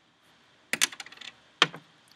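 A cluster of quick light clicks and taps, then one sharp click a moment later: plastic spoons knocking and scraping against small glass baby-food jars.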